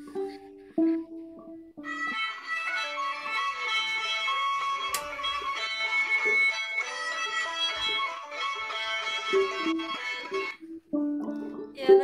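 A plucked string instrument playing a few separate notes, then a run of ringing notes from about two seconds in that stops abruptly near the end.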